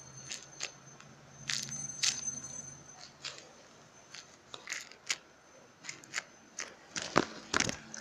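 Crinkling and crackling of the clear tape covering a paper squishy as it is handled, in scattered short crackles with a couple of louder ones near the end.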